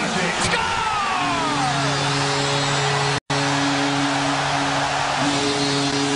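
Arena goal horn sounding over a cheering hockey crowd, with a short break about three seconds in.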